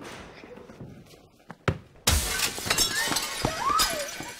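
A sharp knock, then about half a second later a loud sudden crash of glass shattering, with broken shards tinkling on for nearly two seconds.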